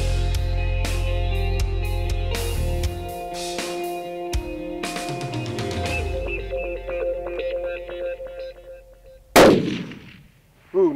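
Background rock music with guitar, thinning out over the second half, then a single loud rifle shot about a second before the end: a Gunwerks LR-1000 in 7mm LRM firing.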